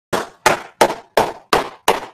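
Hands clapping in a slow, even rhythm: six sharp claps about three a second, each with a short ring of room echo.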